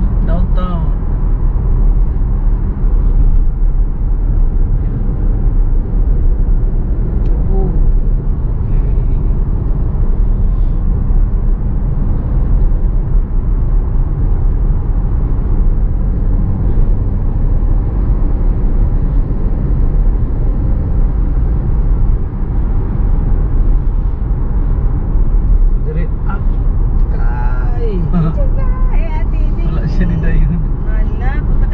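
Steady road and tyre noise of a car at highway speed, heard from inside the cabin, with a low rumble that holds an even level throughout. A voice comes in near the end.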